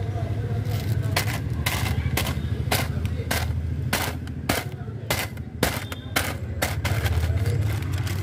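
Irregular clicks and knocks of a phone being handled, fingers rubbing and tapping near its microphone, over a steady low hum inside a car.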